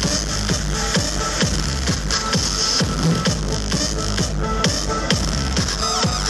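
Loud electronic dance music from a DJ set over a hall PA system, with a steady kick drum about two beats a second.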